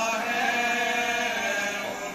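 Men's voices chanting a marsiya (Urdu elegy) without instruments: a lead voice into a microphone with others joining in, holding long notes that bend slowly in pitch.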